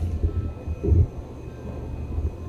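Low rumble of a handheld camera being carried and moved about, with a dull thump a little under a second in.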